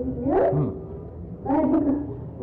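A Carnatic melodic line with smooth sliding ornaments between held notes, from a voice or a bowed instrument, on an old archival recording.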